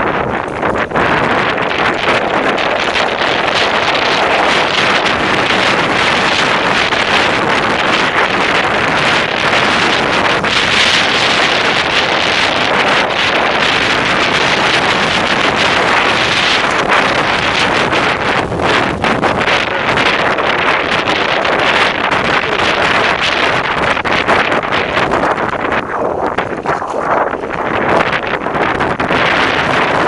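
Rushing wind noise on a helmet camera's microphone as a mountain bike descends a rough dirt trail, with frequent knocks and rattles from the tyres and bike over bumps.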